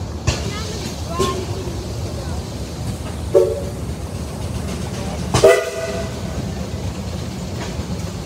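A 22-65 Keck-Gonnerman steam traction engine working under load on a dynamometer, giving a steady low rumble from its exhaust and running gear. Two short steam-whistle toots sound about three seconds in and again, louder, about five and a half seconds in.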